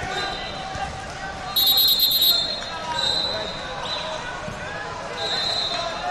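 A referee's pea whistle is blown once, loud and trilling, about one and a half seconds in, stopping the action. Fainter whistles from other mats follow around three seconds and five seconds in, over steady crowd chatter echoing in a large hall.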